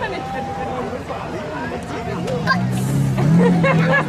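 Crowd chatter, then from about two seconds in a modified autocross touring car's engine running at low revs and rising slightly as the car pulls away.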